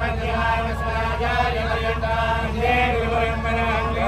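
Group of male temple priests chanting Vedic mantras in unison, in long held notes that step up and down in pitch, over a steady low background hum.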